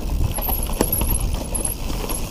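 Mountain bike rolling fast down a rocky trail covered in dry leaves: tyres crunching over leaves and stones, with irregular knocks and rattles from the bike, over a low wind rumble on the microphone.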